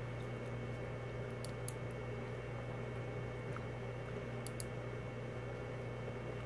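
Faint computer-mouse clicks, two quick pairs, about one and a half seconds in and again about four and a half seconds in, over a steady low hum.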